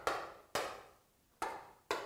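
Chalk striking a chalkboard as short strokes are written: four sharp taps, each fading quickly.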